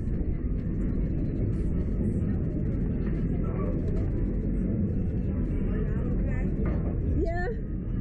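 Steady low rush of wind buffeting the microphone on a swinging Slingshot ride capsule. Near the end, a rider lets out a wavering cry.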